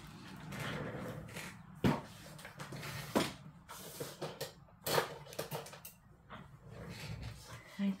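Tabletop handling sounds: light rustling of paper and plastic, with three sharp knocks spread through the few seconds.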